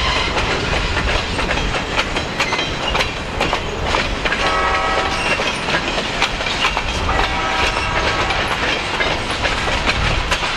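Loaded freight cars rolling past at close range, their steel wheels clicking steadily over rail joints over a continuous rumble. Two short pitched tones sound over it, about four and seven seconds in.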